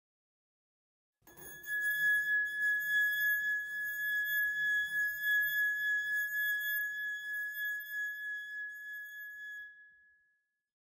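A held high-pitched tone with a ladder of overtones, wavering slightly in loudness over a faint low pulsing. It comes in about a second in and fades out near the end.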